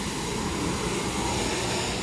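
A steady rushing noise.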